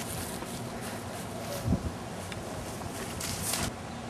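Quiet outdoor background with one soft, low thump a little before halfway and faint rustling near the end.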